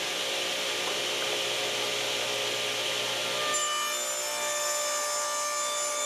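Ridgid table saw running and ripping through a white plastic cutting board, a steady, even sawing noise over the motor's low hum. About three and a half seconds in the sound turns into a steadier whine with clear ringing tones.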